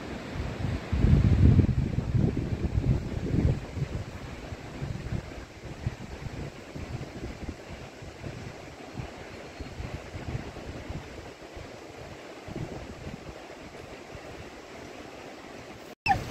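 Wind buffeting the microphone outdoors: gusts loudest in the first few seconds, then settling to a steadier, softer rush.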